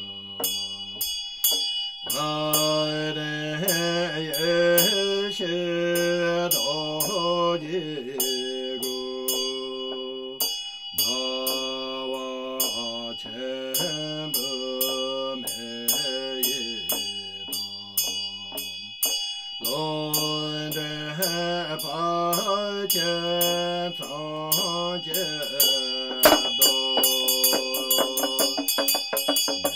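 A male voice chanting a Tibetan Buddhist long-life practice in long melodic phrases, with pauses between them. Under the voice a bell rings steadily, and light strokes keep an even beat of about three a second.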